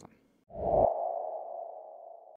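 A transition sound effect: a low thud about half a second in with a single steady mid-pitched tone that fades out slowly.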